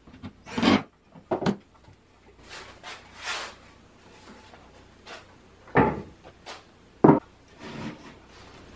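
Wooden table parts being handled and set down: a series of short wooden knocks and thumps with a brief rubbing scrape around the middle, the loudest knocks coming a second or two before the end as the plywood top goes onto the frame.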